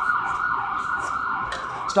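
Emergency vehicle siren wailing, its pitch rising and falling over and over.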